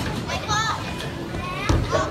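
Children's high-pitched voices and chatter over the background noise of a busy bowling alley, with a sharp thud near the end.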